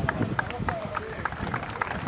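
Voices of spectators and players calling out across an open football pitch, with scattered sharp hand claps.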